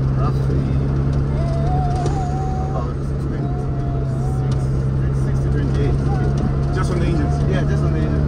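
Toyota EP91 Glanza's engine running steadily while driving, heard from inside the cabin as a constant low hum with road noise. A faint wavering higher tone comes and goes over it.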